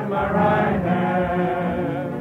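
A choir singing slow, sustained notes in a hymn-like style.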